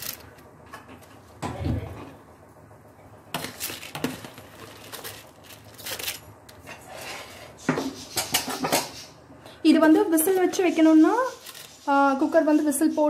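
Scattered clinks and knocks of a utensil against a metal pressure cooker holding simmering coconut milk, with one duller thump early on; a woman's voice comes in near the end.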